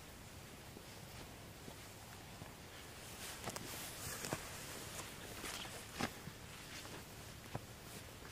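Footsteps of a person walking slowly and unevenly through brush, with a few sharp crunches scattered through the second half, the loudest about six seconds in.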